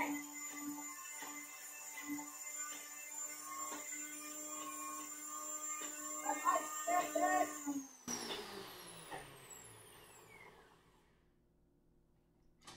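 Countertop blender motor running steadily as it purees cabbage, then switched off about eight seconds in, its whine falling in pitch as it winds down and fades out.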